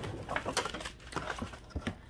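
Packing paper and cardboard rustling, with light irregular taps and clicks, as hands dig into a shipping box of vinyl records.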